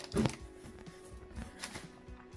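Faint clicks of a nail-art brush being slid into its plastic cap, about one and a half seconds in, after a short louder bump near the start, over quiet background music.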